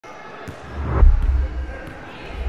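A basketball bouncing on a hardwood gym floor, making deep booming thuds that are loudest about a second in, with faint voices in the hall.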